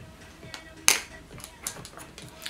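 Soft background music, with one sharp click about a second in and a few lighter taps, from makeup brushes and eyeshadow palettes being handled.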